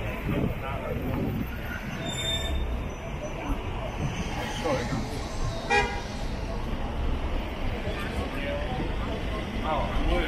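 Cars moving through a city intersection, with one short car horn toot about six seconds in, the loudest sound here. Voices of passers-by are heard.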